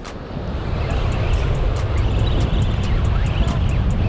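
Steady low rumble of wind on the microphone and surf, with a faint rapid ticking from a spinning reel as its handle is cranked to reel in a hooked shark.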